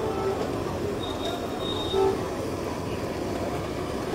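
An egg omelette frying in plenty of butter in a steel pan on a gas stove: a steady noisy sizzle under the general noise of a busy street stall, with a couple of brief faint squeaky tones, one about two seconds in.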